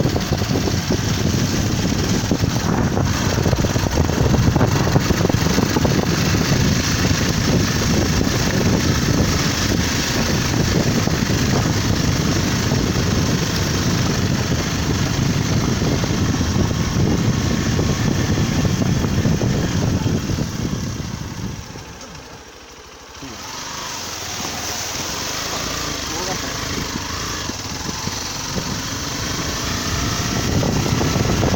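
Motorcycle riding along a rough road, heard from the pillion seat: engine running under heavy wind rush on the microphone. The sound drops off for a couple of seconds about three-quarters of the way through, then builds again.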